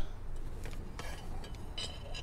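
Small metal mounting hardware, screws and ball mounts, clinking lightly as it is picked up from its plastic bags, with a few sharp clicks near the end.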